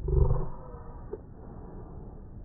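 A cartoon clown's sneeze, slowed and pitched far down into a deep, short blast that fades within about half a second, with a faint click about a second in.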